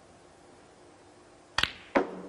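Snooker cue tip striking the cue ball, followed about a third of a second later by a louder, sharp click as the cue ball hits the pink, which rings briefly.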